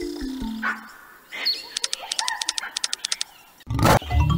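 Online slot game sound effects. The spinning-reel tune stops, a quick run of clicks follows at about ten a second as the reels come to rest, and a short loud roar-like animal effect sounds just before the end as lion symbols land for a win.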